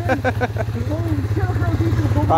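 ATV engine running steadily at low revs with an even low hum, with voices calling over it.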